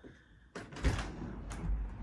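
A sliding glass door being opened: a knock about a second in, then a sharp click. After that a steady low hum of the city outside comes in.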